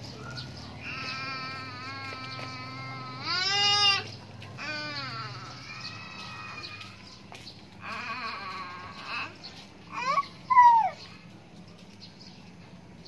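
A toddler's high-pitched vocalizing: a string of drawn-out, wavering calls and squeals. The loudest come about three seconds in and near the end.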